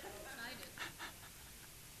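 Faint murmur of congregation voices answering the preacher's question, with a couple of short soft sounds about a second in, then quiet room noise.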